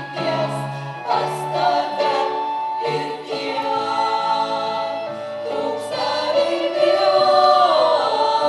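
Women's vocal ensemble singing in several parts, holding long notes, growing louder near the end.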